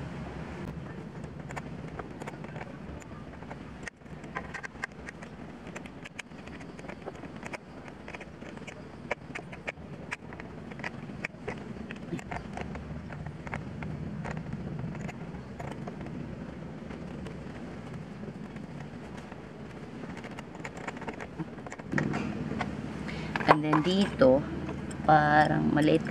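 Light metallic clicks and clinks of a hand tool on a car battery's terminal clamp as it is tightened, scattered over a steady background hum. Louder voice-like sounds come in near the end.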